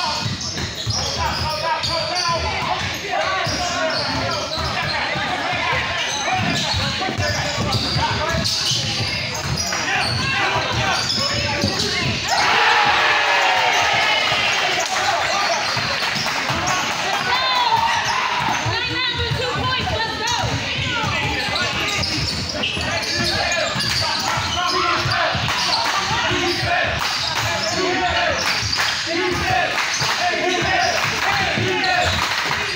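Basketball game in a large gym: a ball bouncing repeatedly on the court under shouting from players and spectators, with the voices swelling louder about twelve seconds in.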